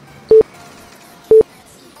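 Interval timer countdown beeps: two short, identical mid-pitched beeps a second apart, marking the last seconds of a work interval before the switch to the next exercise.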